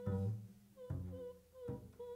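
Free improvisation: a woman's voice humming held notes on one pitch, broken off and taken up again, over low notes from a double bass.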